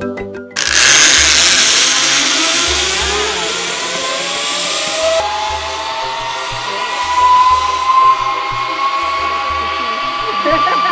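Zipline pulley running along the steel cable: a rushing whizz that starts suddenly about half a second in, with a whine that rises steadily in pitch. Background music with a steady bass beat plays underneath.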